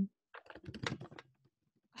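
Typing on a computer keyboard: a quick run of key clicks lasting about a second, starting shortly in.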